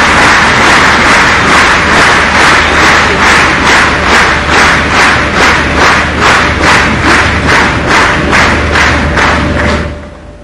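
A large hall audience applauding, the clapping falling into a steady unison rhythm of about two claps a second a few seconds in. It stops suddenly near the end.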